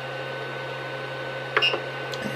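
Creality CR-10 Mini 3D printer idling just after power-up, its cooling fans and electronics giving a steady hum with a faint whine. A brief click about one and a half seconds in, as the control knob is pressed to open the menu.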